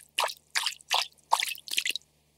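Cartoon sound effect of water dripping and splashing in a quick, even series of drops, about three a second, which stops abruptly at the end.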